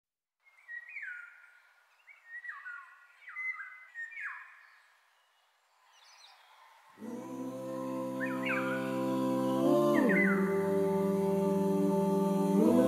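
Birdsong in a song intro: a run of short, downward-sliding whistled chirps. About seven seconds in, held chords of music come in and swell, with more chirps continuing over them.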